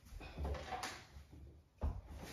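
Footsteps and handling knocks as someone moves away from the table and back, with a dull thud about half a second in and a sharper knock near the end.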